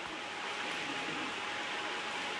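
Steady background hiss with a faint, thin steady tone running through it.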